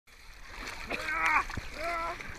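Water splashing and sloshing in a swimming pool as swimmers tussle over a ball, with two short vocal exclamations, one about a second in and one near the end.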